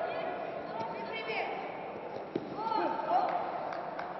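Voices shouting and calling in a sports hall during a judo bout, with a single sharp thud about two seconds in as a judoka is thrown onto the tatami.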